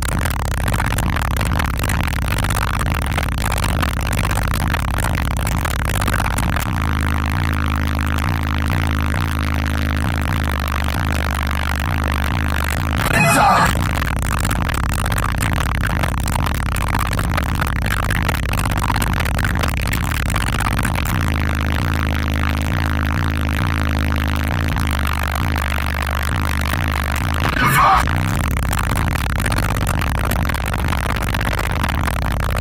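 Car-audio subwoofers playing bass-heavy music at high volume inside a van cabin with both windows down; deep bass notes shift in pitch throughout. Two brief louder bursts of noise stand out, one near the middle and one near the end.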